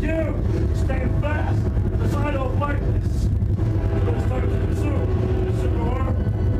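A voice uttering short syllables that bend up and down in pitch, over a steady low rumbling drone.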